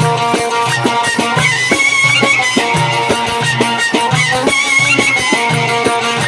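Live Egyptian folk music: a frame drum beats a steady rhythm under a high, wavering melodic line.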